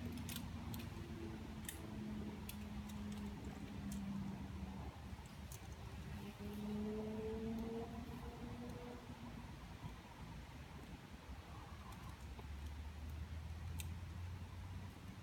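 Metal climbing gear on a harness rack, carabiners and nuts clinking in scattered light clicks, more of them early on and one near the end. A faint hum runs underneath, rising slowly in pitch in the middle.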